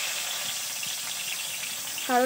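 Chopped tomatoes sizzling in hot oil in a large kadai: a steady frying hiss.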